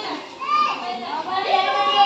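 Children and adults calling out and chattering over one another, high children's voices at play.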